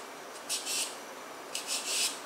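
A blade scraping the skin off an eggplant in two short strokes, one about half a second in and one near the end.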